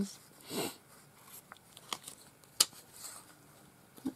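Paper ephemera pieces being handled and shuffled: soft rustling of paper and card, with a few small sharp clicks, the sharpest about two and a half seconds in.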